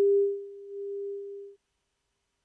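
A steady electronic beep at one pitch, a pure tone, loudest at the start and held for about a second and a half before it cuts off.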